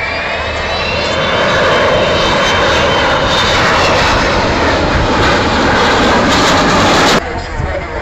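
Avro Vulcan delta-wing bomber's four Olympus jet engines passing low overhead: a rising whine at first, then a loud roar that builds over the first couple of seconds and cuts off suddenly about seven seconds in.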